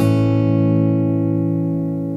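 Acoustic guitar chord in an indie folk song, strummed right at the start and left to ring, slowly fading.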